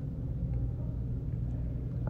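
Steady low rumble, a background hum with no other distinct sound.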